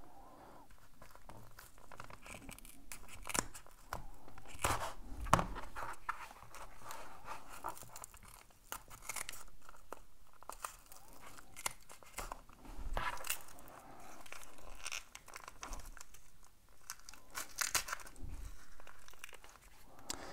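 Scissors snipping through layers of duct tape, with the tape tearing and crinkling as fingers peel it back. Irregular snips and rips come one after another with short pauses between.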